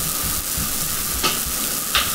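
Steady hissing, crackly background noise of a poor recording line, with no voice in it, and a couple of faint short clicks.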